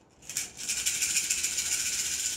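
A handful of cowrie shells shaken between cupped hands, a continuous dense rattle that starts about half a second in. This is the shaking of the shells before they are cast for a divination reading.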